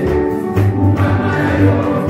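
A church congregation singing a gospel worship song together over music with a strong bass line.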